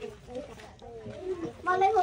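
Faint, wavering voice sounds, then a child's voice starting to speak near the end.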